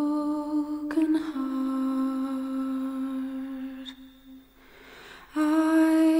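Slow, wordless album music: a female voice humming long held notes. Two notes carry the first four seconds, the sound fades to a quiet stretch, and a new, louder note comes in near the end.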